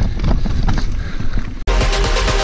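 Wind buffeting the microphone of a camera carried on a moving mountain bike, with low rumble and quick rattling clicks from the bike running over a dirt trail. About one and a half seconds in, this cuts off abruptly and electronic music with a steady beat starts.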